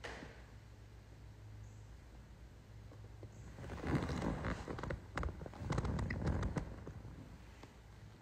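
Soft rustling and a few sharp clicks for several seconds in the middle, over a faint steady low hum.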